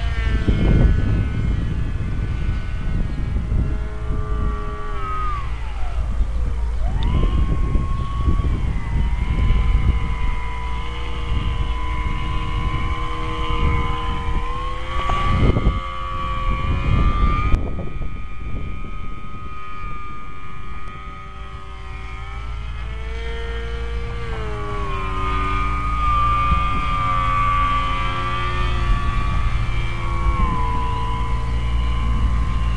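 Electric brushless motor and propeller of a small depron delta-wing RC plane in flight: a whine of several stacked tones that glides down and up in pitch as the plane manoeuvres and passes. A low rumble of wind buffets the microphone underneath.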